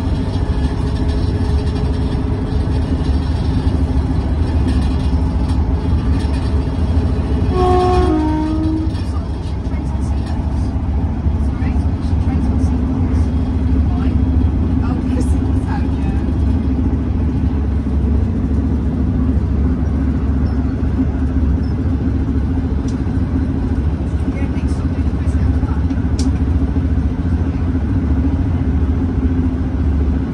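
Diesel passenger train running at speed, heard from inside the carriage: a steady rumble of the engine and wheels on the rails, with a constant hum. About eight seconds in, a brief two-note horn sounds.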